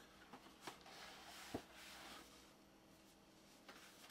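Near silence with light handling noise from a vinyl record package: a few faint clicks and soft rustling, over a faint steady hum.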